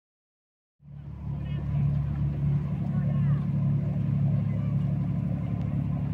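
A steady low engine drone that sets in abruptly about a second in, with faint voices over it.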